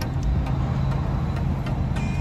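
Ford Mustang convertible's engine idling with the top down, a steady low hum.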